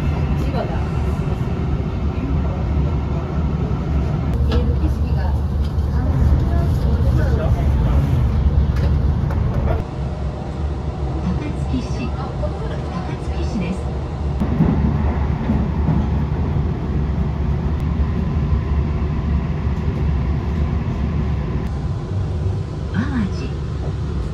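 Steady low rumble of a Hankyu train running, heard from inside the passenger car. It dips in level about ten seconds in and picks up again a few seconds later.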